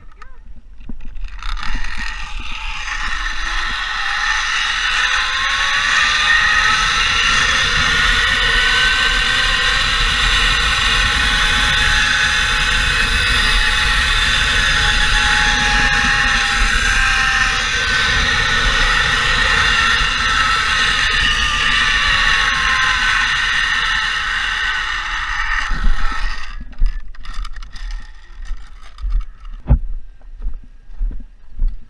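Zipline trolley pulleys running along the steel cable, with rushing wind on the microphone. The whine rises in pitch as the rider picks up speed and falls as the ride slows. It cuts off near the end on landing, followed by a few knocks.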